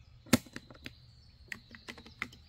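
Metallic clicks of 6mm ARC cartridges being pushed into the Savage Axis II's detachable box magazine. One sharp click comes about a third of a second in, followed by several lighter clicks.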